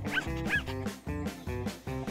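Background music of plucked or keyed notes, with a small dog yipping twice in the first second as a cartoon sound effect.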